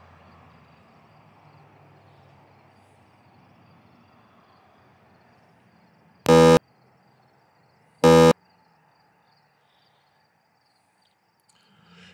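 Two short, loud electronic buzzer beeps, each about a third of a second long and about two seconds apart, over a faint background that fades away.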